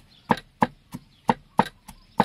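A large knife chopping garlic cloves on a wooden chopping board. The blade knocks sharply against the board in strokes about a third of a second apart, with a short pause midway.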